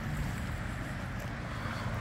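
Steady outdoor rushing noise: wind on the microphone mixed with the rush of a swollen, fast-flowing river.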